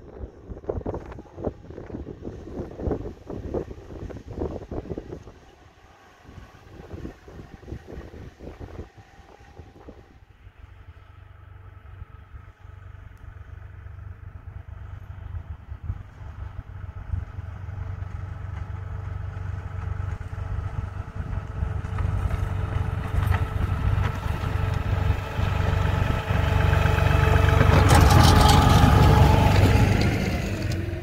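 Wind buffeting the microphone at first, then an LS MT235 compact tractor's diesel engine running steadily, growing louder over the last twenty seconds as the tractor drives closer pushing its log snow plow.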